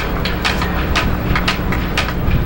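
Marching band drum beat, sharp strikes about two a second with lighter taps between, over steady background noise.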